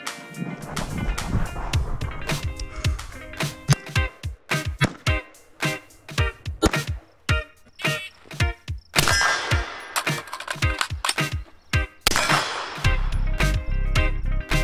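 AR-15 rifle shots fired in quick irregular strings, several a second, over background music.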